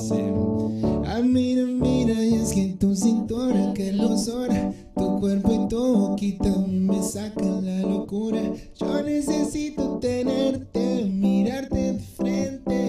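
A man singing a slow song live into a microphone over steady instrumental chord accompaniment, his voice gliding between held notes.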